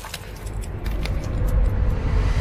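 A deep, low rumble swelling steadily louder, with a few faint clicks over it.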